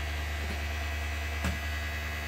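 Small battery-powered electric motor of a toy flapper paddle boat running with a steady buzzing hum. There is one faint tap about one and a half seconds in.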